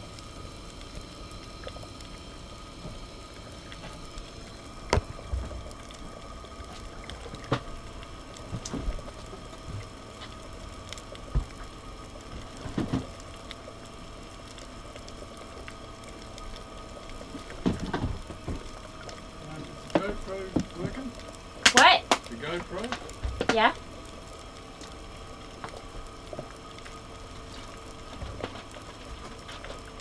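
A lidded pot of salted seawater heating on a propane galley stove, with a steady low hum and scattered knocks and clanks, the loudest cluster a little over twenty seconds in.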